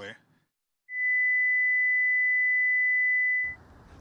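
A steady, high-pitched electronic beep on one pitch, lasting about two and a half seconds, starting about a second in and cutting off abruptly.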